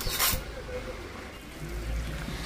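Pot of chicken-feet vegetable soup boiling: a steady, low bubbling hiss, with a brief sharper hiss just after the start.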